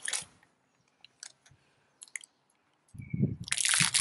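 A few scattered light clicks and taps over near quiet. Near the end comes a low bump of handling, then a loud rustling rush.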